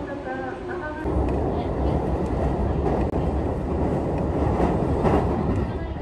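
A train running on the rails, heard from on board: a loud, steady rush of wheel and running noise with a deep low hum, starting abruptly about a second in. It follows a brief voice.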